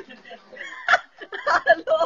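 A person's voice in short, broken bursts of talk and laughter, with a sharp burst about a second in.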